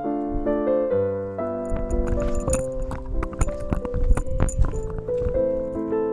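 Background piano music, a gentle melody of held notes. From about two seconds in to about five seconds in, irregular sharp clicks and knocks sound over it.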